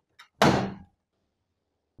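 A power plug forced into a wall socket: a few faint clicks, then a single loud thunk about half a second in.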